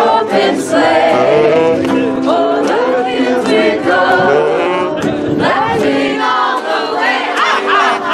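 A small group of voices singing a Christmas song together, live, with acoustic guitar and saxophone playing along.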